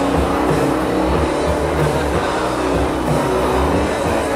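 Loud live band music: a steady, dense wall of distorted guitar and bass with heavy low notes that shift, and no drum hits standing out.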